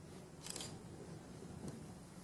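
Quiet stage room tone with a low steady hum. A brief scuffing noise comes about half a second in, and a faint click near the end.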